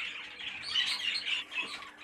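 Cage birds chirping and chattering in a shed full of budgerigar and canary cages, with a cluster of quick high chirps around the middle.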